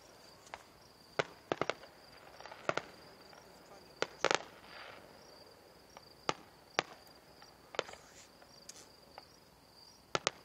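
Aerial fireworks bursting: a string of sharp cracks and bangs, some coming in quick clusters of two or three, scattered unevenly about a second apart.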